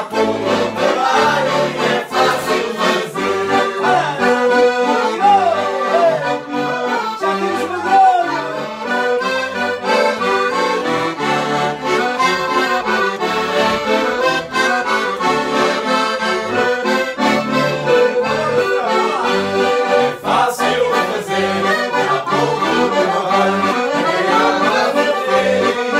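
Two accordions playing a traditional Portuguese folk medley together, a melody over a steady, regular bass rhythm.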